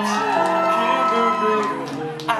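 Live band playing, with acoustic and electric guitars and one long held note that stops shortly before the end.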